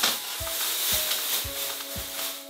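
Thin plastic drop sheet rustling and crinkling as it is handled and gathered up.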